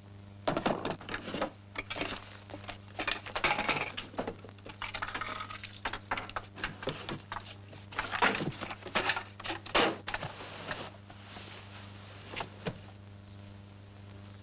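Objects being handled and shifted while a room is searched: a busy run of knocks, thumps and short rustles that thins out about three-quarters of the way through, over a steady low hum.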